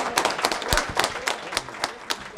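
Small audience applauding with scattered, irregular hand claps that thin out toward the end.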